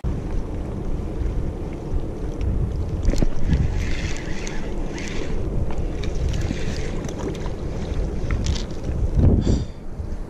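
Steady low rumble of wind buffeting the camera's microphone, with a few faint clicks and knocks.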